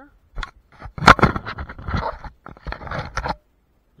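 Arrows in a quiver rattling and scraping right against the microphone as they are handled, a dense run of clicks and scrapes with a sharp knock about a second in.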